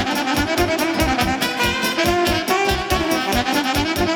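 Live band playing a fast Romanian folk dance tune from a Bihor medley, with saxophone carrying the melody over a steady, fast beat.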